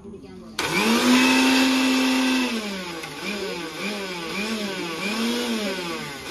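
Preethi electric mixer grinder grinding a wet ginger-chilli masala paste in its small steel jar: the motor whine starts suddenly about half a second in and holds steady for about two seconds. It is then run in about five short pulses, the whine dipping and rising each time.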